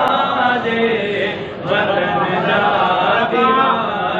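A man chanting Sindhi devotional verse (naat) solo and unaccompanied, in long melodic lines with a brief breath pause about one and a half seconds in.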